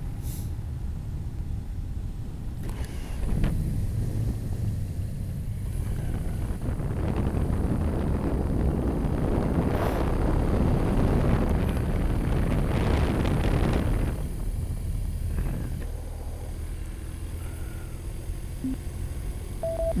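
Motorcycle under way: a steady engine and road rumble mixed with wind rush on the bike-mounted microphone. The wind rush grows louder over the middle of the stretch and eases off again near the end.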